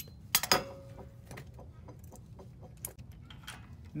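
Metal hand tools and bolt hardware on a truck's front suspension: two sharp metallic clicks about half a second in, then faint, irregular ticks and one more click near the end.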